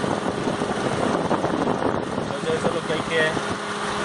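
Electric radiator cooling fans running steadily together with the idling engine, just switched on by the coolant temperature switch. They cut in only at a high engine temperature, which the mechanic takes to be a possibly faulty or dirty temperature sensor switching them on too late.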